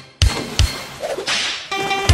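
A large dog splashing into a swimming pool: a sudden splash of water shortly after the start that trails off, then a second splash in the second half. Music with a beat comes in near the end.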